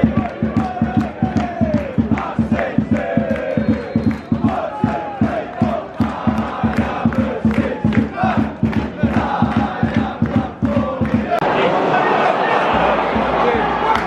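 Football crowd chanting to fast, even clapping, about four claps a second. About eleven seconds in, the beat stops and gives way to a louder, shapeless crowd roar.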